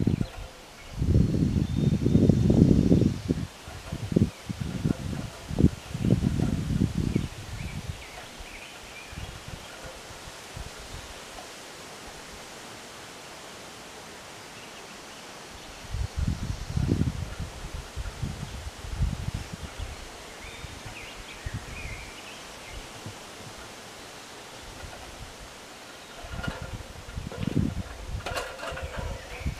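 Wind buffeting the microphone in irregular low gusts, one spell about a second in and another at about sixteen seconds, over a steady rustle of aspen leaves.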